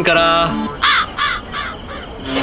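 A crow cawing three times in quick succession, each call short and harsh.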